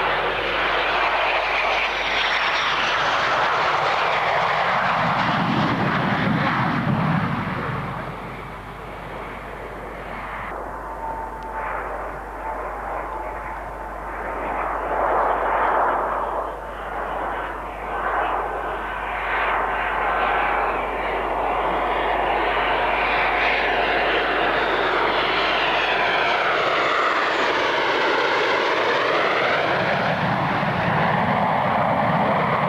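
Twin-engine CF-18 Hornet fighter jets (General Electric F404 turbofans) flying low approaches with gear down, giving a continuous loud jet roar. The roar eases for several seconds in the first half, swells again, and near the end sweeps in pitch as a Hornet passes close.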